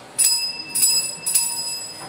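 An altar bell rung three times in quick succession, each ring leaving a clear high ringing tone that fades away. It is rung as the priest drinks from the chalice at communion in the Mass.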